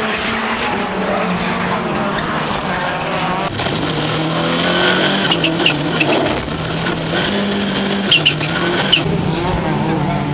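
Rallycross cars racing: engines revving up and down through the gears, with tyres skidding. From about the middle, a run of sharp cracks sounds over the engine noise.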